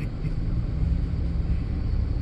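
Steady low rumble of a car's engine and road noise, heard from inside the cabin as the car rolls slowly.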